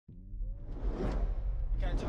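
Cinematic whoosh effects over a deep bass rumble, building in loudness, with a sharper swish just before the end: the sound design for an animated logo intro.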